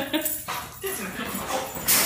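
A dog whining and whimpering excitedly as it greets its owner home. A brief loud noisy burst comes near the end.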